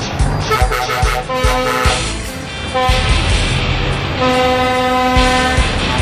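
Truck air horn sounding three times over music with a steady beat, the last blast the longest at about a second and a half.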